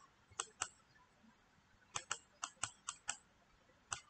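Computer mouse clicking, short sharp clicks: two about half a second in, then a quick run of six between two and three seconds in, and one more at the very end.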